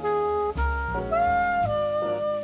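Background jazz music: a saxophone plays a melody of held notes, sliding up into one about a second in, over a bass line.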